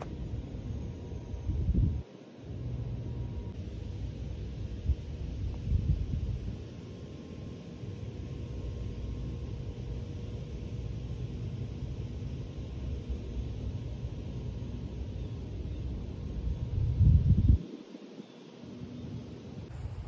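Wind buffeting the microphone: a low rumble that swells in gusts, loudest about two seconds in, again around six seconds and near the end.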